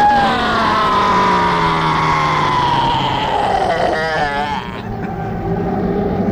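A man's long, drawn-out scream, right after a shouted "Yeah!". It falls slowly in pitch over about four seconds and breaks into a wavering warble near the end.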